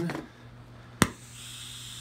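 GTT Mirage two-stage propane-oxygen glassworking torch lighting with a single sharp pop about a second in, then the steady hiss of its flame.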